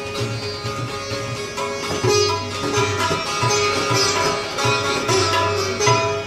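Sitar played live with tabla accompaniment: a plucked melody with ringing sympathetic strings over a rhythm of tabla strokes, the deep bass drum thudding regularly beneath.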